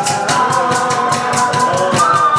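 Live band music: a flute plays a held, stepping melody over maracas shaken in a steady rhythm, about four strokes a second, and a regular low cajón beat.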